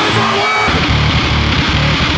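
Powerviolence/grindcore band playing fast and loud, with heavily distorted guitar and pounding drums. The bass and drums drop out briefly about half a second in.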